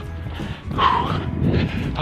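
A man panting hard and letting out a groaning gasp about a second in, out of breath from physical exertion.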